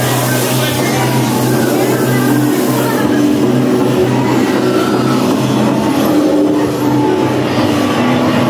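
Haunted-maze soundtrack: a loud, steady low rumbling drone with indistinct voices in it.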